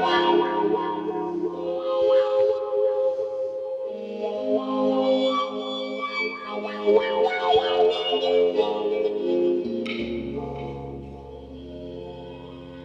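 Live instrumental music on a Great Island Mouthbow: sustained droning notes with wavering, gliding overtones above them. The drone moves to new pitches a few times, and there is a sharper struck attack about ten seconds in, after which it grows quieter.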